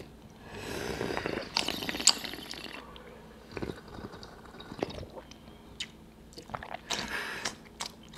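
Tea being slurped noisily from small tasting cups, the air drawn through the liquid with a drawn-out hiss, then a few light clicks and taps of the cups, and another short slurp or sniff near the end.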